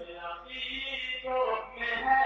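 A man's voice chanting a naat, an Urdu devotional poem, softly and with held notes that shift in pitch.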